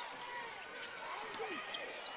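Quiet basketball-arena sound from a game broadcast: a ball dribbling on a hardwood court, with faint, scattered voices from the arena.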